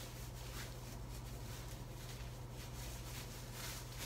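Faint rustling of a thin disposable isolation gown as its ties are fastened behind the back, over a steady low electrical hum.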